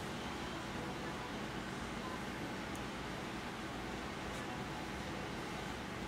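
Electric potter's wheel running with a steady, even hum and hiss while a rubber rib is worked over the wet clay cylinder; no separate strokes or knocks stand out.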